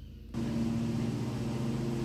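A steady low machine-like hum with a faint hiss, starting suddenly about a third of a second in.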